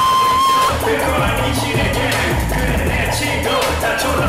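Live hip hop played loud through a concert PA, recorded from within the crowd. A held high note stops under a second in, then a heavy bass-driven beat comes in, with a rapper's voice over it.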